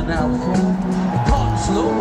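Live rock band playing an instrumental passage, with held and sliding notes over bass and a regular kick drum, recorded from within the arena audience.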